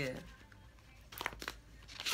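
Paper cards being handled and drawn from a stack by hand: a few short, light rustles and flicks, a little over a second in and again near the end.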